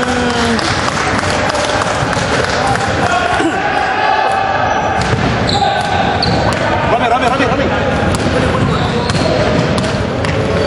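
Basketball bouncing on a hardwood gym floor during a game, with players' voices echoing around the large hall.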